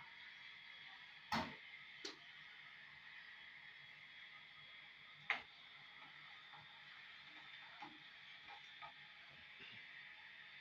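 A metal spoon clicking and scraping against a steel saucepan while stirring tamarind chutney: a few sharp knocks, the loudest about a second and a half in, then near two and five seconds, over a faint steady hiss.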